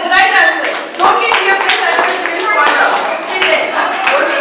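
A group of small children clapping in uneven, overlapping claps, mixed with children's voices.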